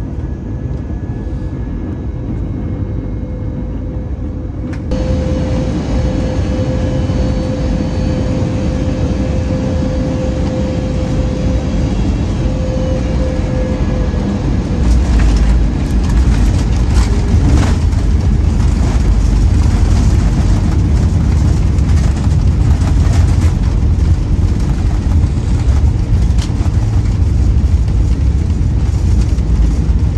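Airliner cabin noise on final approach: a steady engine and airflow rush with a faint hum. About halfway through, the plane touches down with a few knocks, and a loud low rumble follows as the jet rolls along the runway.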